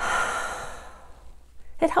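A woman's long, audible breath out through the mouth, loudest at the start and fading away over about a second and a half: the slow exhale of a 'balloon breath' calming exercise.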